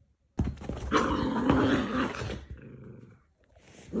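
Dog play-growling at another dog: a long, loud growl that starts suddenly about half a second in and tails off past two and a half seconds, with a second growl starting near the end.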